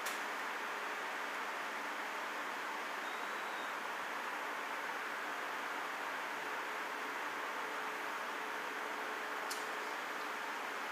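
Steady, even hiss of room noise, with no distinct drinking or swallowing sounds standing out; a faint click or two near the end.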